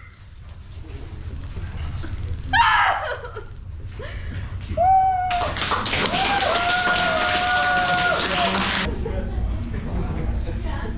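A TASER's rapid electrical clicking runs for about three and a half seconds in the second half, while a woman receiving the shock cries out in short yells and then a long held groan.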